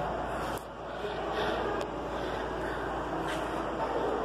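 Steady background noise of an aquarium viewing area, with a faint murmur of distant voices; it dips briefly about half a second in.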